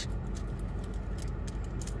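A few small crinkles and clicks as a foil lid is peeled off a plastic cocktail-sauce cup, over the steady low hum of a car's air conditioning.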